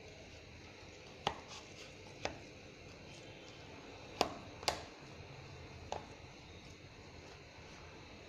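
A hand kneading minced chicken mixture in a plastic bowl: quiet handling with five sharp clicks scattered through.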